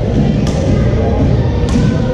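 Two sharp racket strikes on shuttlecocks, a little over a second apart, over the loud, steady low hum of a busy badminton hall.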